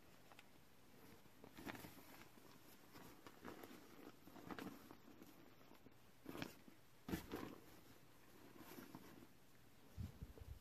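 Faint, intermittent rustling and crinkling of a thin plastic Halloween costume as it is handled and unfolded, in about six soft bursts.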